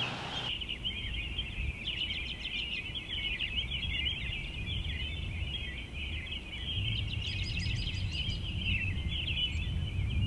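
A dense chorus of many short, high chirps overlapping continuously, over a faint low rumble.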